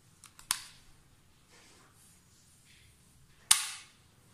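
Single-phase residual-current circuit breaker (RCCB) clicking as it is worked by hand. There are a few light clicks, then a sharp snap about half a second in, and a louder snap near the end as the 1.5 V battery touches its wire. Tripping at that touch is the sign that its trip mechanism works.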